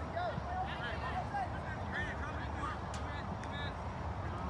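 Distant, overlapping voices of people calling out across an open sports field, over steady outdoor background noise.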